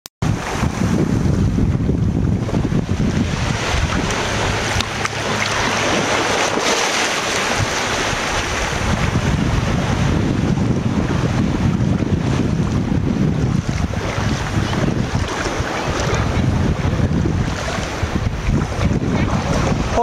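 Wind buffeting the microphone over shallow surf washing at the water's edge, a steady rushing noise with a gusty low rumble.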